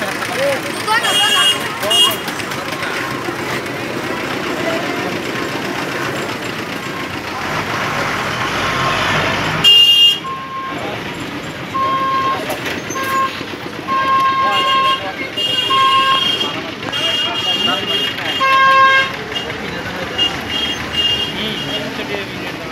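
Busy market crowd chatter, then from about ten seconds in a vehicle horn honking again and again in a string of short and longer toots.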